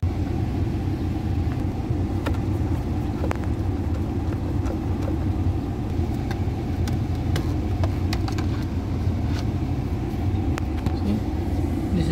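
Volkswagen Jetta engine idling steadily, heard from inside the cabin, with a few light clicks scattered through it.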